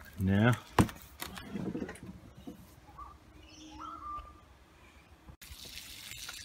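Mostly quiet outdoor background with a sharp click just under a second in and faint bird chirps around the middle.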